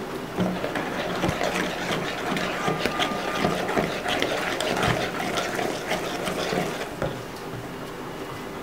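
Hand whisk beating runny cake batter in a plastic bowl: a quick, steady clatter and slosh that gets quieter about seven seconds in.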